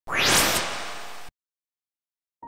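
Whoosh sound effect: a loud rush of noise with a quickly rising sweep, fading and then cutting off suddenly just over a second in.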